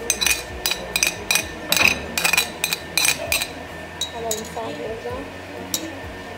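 Spoon tapping and scraping against a china plate and a stainless-steel mixing bowl as chopped onion and garlic are knocked off into the bowl: a quick run of sharp, ringing clinks, about three a second, stopping about three seconds in, with one more clink near the end.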